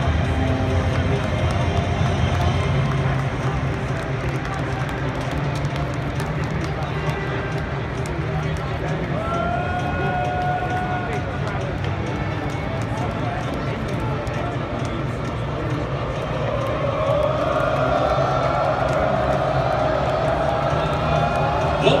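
Large stadium crowd chattering, with music over the public address. The crowd grows louder from about three-quarters of the way in.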